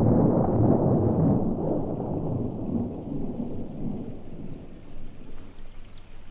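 A long rumble of thunder dies away slowly, with a rain-like hiss under it. Faint high bird chirps come in near the end.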